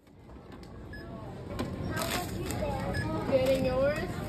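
Checkout-lane ambience at a supermarket register: indistinct voices, a few sharp clicks and two short beeps, fading in at the start.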